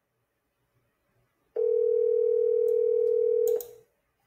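North American ringback tone from a phone on speakerphone: one steady two-second ring starting about one and a half seconds in, the sign that the called line is ringing and not yet answered. A few faint clicks come near the end of the ring.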